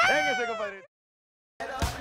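A high-pitched, wavering voice-like call with a falling pitch, cut off abruptly under a second in by dead silence from an edit; sound comes back with a couple of low thumps shortly before the end.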